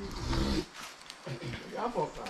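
Indistinct talking by people nearby, with no clear sound other than voices.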